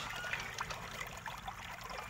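Faint, steady background hiss with no distinct event.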